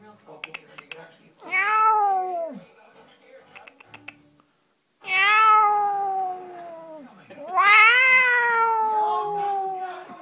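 Two-month-old kitten meowing: three long, drawn-out meows, each sliding down in pitch at its end, the last two close together.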